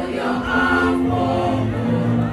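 A choir singing together, holding sustained notes.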